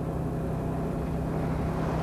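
Steady low drone of a moving bus heard from inside the passenger cabin: engine and road noise with a constant hum.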